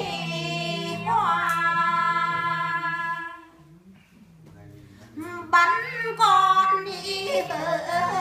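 Women singing a Vietnamese quan họ folk song unaccompanied, in long held notes with wavering ornaments. The singing breaks off about three seconds in and resumes about two seconds later.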